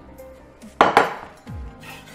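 A ceramic salad bowl set down on a stone kitchen benchtop: two sharp knocks close together about a second in, followed by a duller thud.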